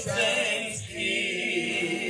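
A man singing a worship song into a microphone, holding long notes with a wavering vibrato, with acoustic guitar accompaniment.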